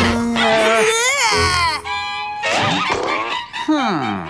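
Cartoon characters making wordless vocal noises over a music score: a held yell, then squeals and pitch glides that swoop up and fall away.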